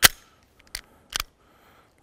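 Metallic clicks of a semi-automatic pistol being handled: one sharp click, then two fainter ones about three-quarters of a second and just over a second later.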